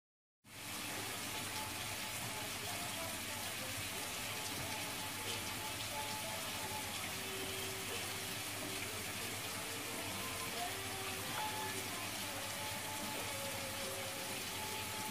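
Steady rushing hiss like rain or running water, with faint short tones over it.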